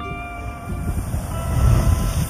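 Ocean surge forcing up through a lava-rock blowhole, a low rumbling rush of water and spray that builds to its loudest near the end.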